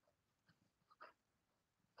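Near silence, with a few faint, brief sounds from a dog moving on a leash, the loudest about a second in.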